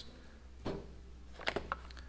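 A few faint light clicks and rustles from items being handled inside a cardboard shipping box, over a low steady hum.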